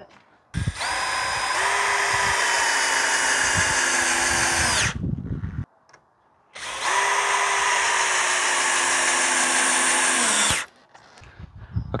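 Power drill driving two-and-a-half-inch coated deck screws through a wooden crossbar into an upright post. It makes two steady runs of about four seconds each, separated by a pause, and each run slows in pitch just before it stops.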